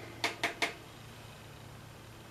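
Three quick light clicks as makeup is handled, within about half a second, then faint steady room tone.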